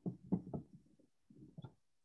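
A few faint knocks: a quick run of them in the first half second, then two more about a second and a half in.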